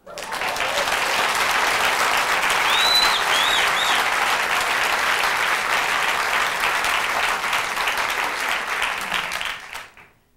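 Audience applauding, starting at once and dying away near the end, with a few short high rising-and-falling calls about three seconds in.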